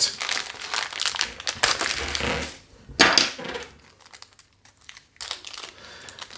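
Plastic kit bag crinkling as it is handled and worked open, busy for the first couple of seconds, with another burst about three seconds in, then a few small scattered rustles.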